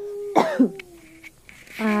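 A person's single short cough about half a second in.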